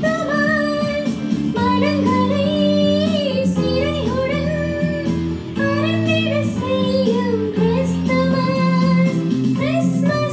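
A woman singing a solo song over instrumental accompaniment, her melody held in long sustained notes above steady chords.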